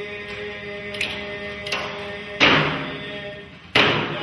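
Alaska Native drum-dance music: a group of voices holding a chanted note, then two loud frame-drum beats in the second half, a little over a second apart.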